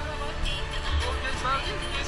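Background music with brief fragments of voices over a low traffic rumble.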